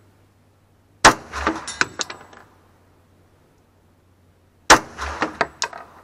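Two pistol shots from a Glock firing .45 ACP 230-grain ammunition, about three and a half seconds apart. Each crack is followed by about a second of fainter cracks and clinks.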